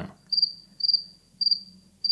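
Cricket chirping sound effect, four short high chirps about half a second apart. It is the stock awkward-silence gag, greeting a doubtful claim of faster performance.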